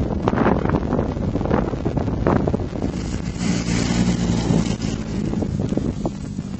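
Rally-raid 4x4 car's engine running hard as it drives past close by, the engine note and the hiss of tyres on dirt loudest about halfway through. Wind buffets the microphone throughout.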